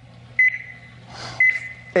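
Game-show countdown clock beeping once a second, two short high beeps as the timer runs down.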